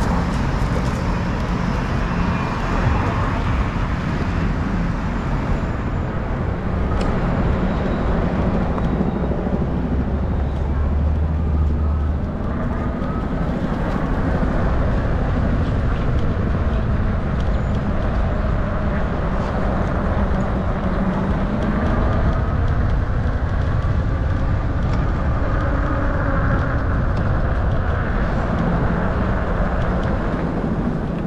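Steady city street traffic noise, cars running along a busy avenue, heard from a moving camera in a bike lane.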